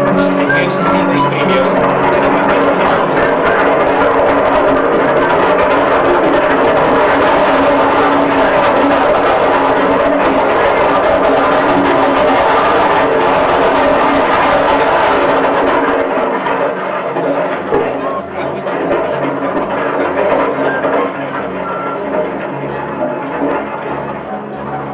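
Music: a loud, dense passage that thins out about two-thirds of the way through into a sparser section with a regular low bass pattern.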